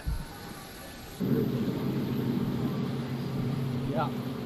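Wind buffeting the microphone, then about a second in a steady low mechanical hum of airport apron machinery, aircraft or ground equipment, starts abruptly and keeps going.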